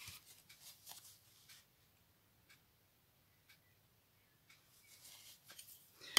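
Near silence in a small room, with a faint tick about once a second and a few small handling clicks in the first second and again near the end.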